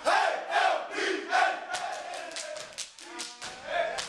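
Step team shouting a call in unison, then a quick run of sharp stepping beats, stomps and hand claps, from about halfway through, with more shouting near the end.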